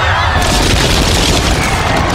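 Film sound effects of a stone dome collapsing: loud, continuous deep rumbling and crashing of falling masonry.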